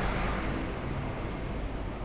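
Road traffic noise: a low, even rumble of a vehicle passing on the street, slowly fading.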